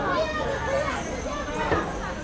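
Voices of passersby talking, with children's voices among them.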